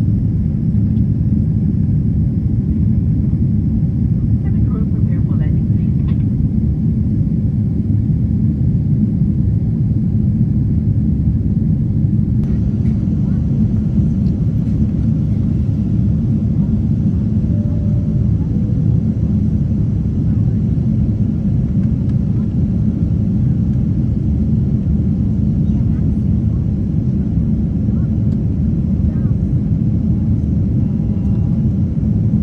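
Steady low rumble inside the cabin of a Boeing 747-8 on its descent, engine and airflow noise heard from a window seat beside the wing and its GEnx engine.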